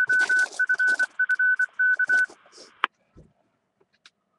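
A 220 MHz amateur radio repeater sending its Morse code identification: a steady high beeping tone keyed in dots and dashes for about two seconds, with a brief click near the three-second mark.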